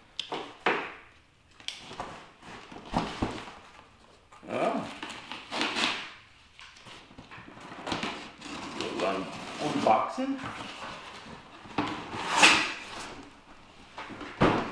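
Cardboard shipping box being opened by hand: packing tape tearing and cardboard flaps rustling and scraping in short irregular bursts, the loudest near the end.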